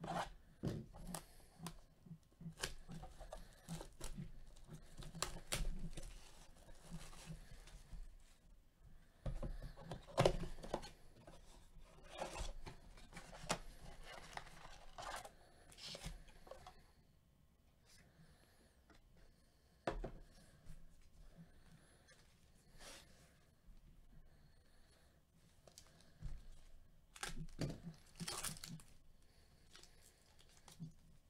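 A Panini Mosaic blaster box of trading cards being torn open by hand, and its foil-wrapped packs handled: irregular tearing, scraping and crinkling of cardboard and wrapper. It is quieter through the middle, with a louder burst of foil-pack tearing near the end.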